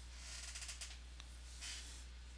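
Quiet room tone with a steady low hum and a few faint rustles and a light tick.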